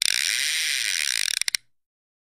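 A rapid mechanical ratcheting sound effect, about a second and a half long, that breaks into a few separate clicks and cuts off suddenly.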